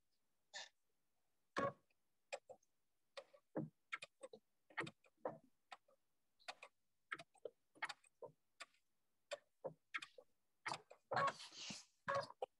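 Sewing machine stitching slowly through a quilt, heard as a string of separate clicks, about two a second and not quite even, with dead silence between them. A longer, louder burst comes near the end.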